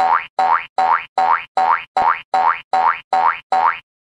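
Cartoon boing sound effect for a bouncing ball, repeated in a steady loop about two and a half times a second, each boing a short rising twang.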